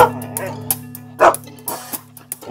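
Several short dog barks and yips, spaced out, over background music with held low notes that grow fainter.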